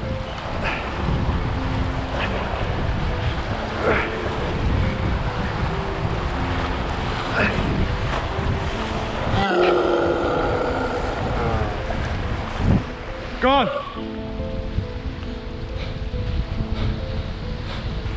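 Surf washing over rocks with wind buffeting the microphone, over a bed of background music with held notes. A brief shouted exclamation comes about thirteen seconds in.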